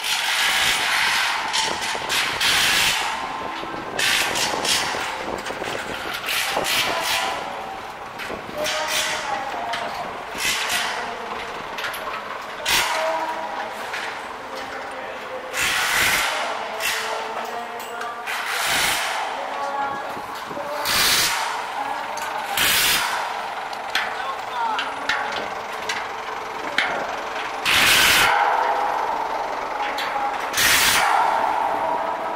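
Night city street ambience: indistinct voices of passers-by and traffic, broken by repeated short, loud hissing rushes of noise every few seconds.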